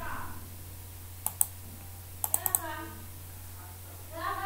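Computer mouse clicking: two sharp clicks a little over a second in, then a quick run of four clicks about a second later, over a steady low hum.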